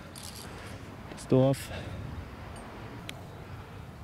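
A man's short voiced sound, a brief hum or grunt, about a second and a half in, over steady outdoor background noise, with a faint click near the end.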